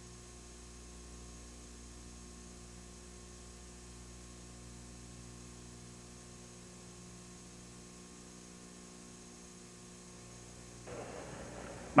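Steady low electrical mains hum with a stack of overtones. About eleven seconds in, a faint hiss comes up.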